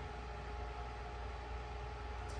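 Steady low hum and hiss of room tone.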